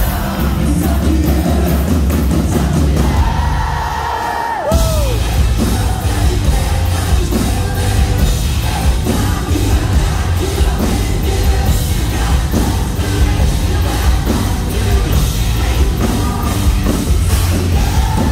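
Live rock band playing, with drums, guitars and a male lead vocal. About three seconds in the band thins out under a held sung note that slides down in pitch, and then the full band comes back in just under five seconds in.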